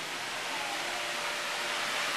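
Large electric stall fan running, a steady rushing hiss of moving air.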